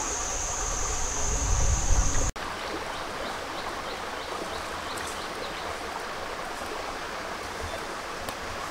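Shallow rocky stream running, a steady rush of water over stones. For the first two seconds a steady high-pitched buzz and a low rumble sit over it, then cut off suddenly.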